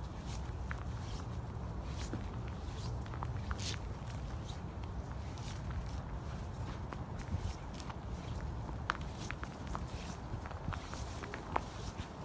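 Footsteps on dry grass and fallen leaves: irregular crackles and rustles scattered through, over a steady low rumble.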